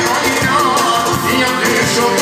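A man singing live into a microphone, his voice wavering and ornamenting the melody, over amplified instrumental backing with a steady beat.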